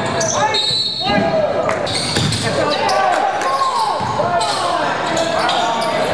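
A basketball bouncing on a hardwood gym floor, with short sneaker squeaks from players running and cutting, over shouting voices echoing in a large gym.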